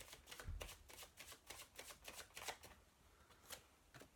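A Cosmic Tarot deck being shuffled by hand: a faint, quick run of soft card clicks that thins out after about two and a half seconds, with a single click near the end.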